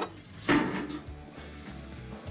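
Background music, with a single knock about half a second in as a kitchen cabinet is shut while a bowl is fetched.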